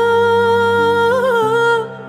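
A woman's voice singing one long held note in an Arabic ballad, with a brief wavering ornament a little past the middle, over soft sustained backing music; the note fades just before the end.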